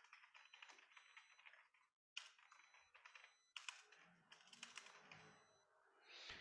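Faint computer keyboard typing, quick runs of keystrokes with a short break about two seconds in.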